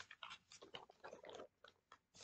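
Faint handling noise of a vinyl LP record and its sleeve: a string of short, irregular rustles and scrapes.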